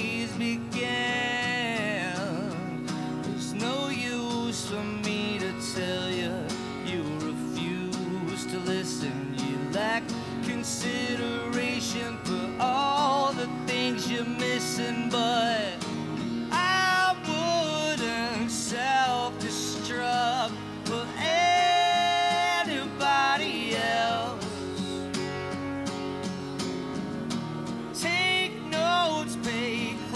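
Live acoustic guitar strumming together with an electric guitar playing melodic lines, an instrumental passage of an indie rock song.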